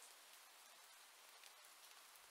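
Near silence: very faint, steady rain ambience, a soft even hiss.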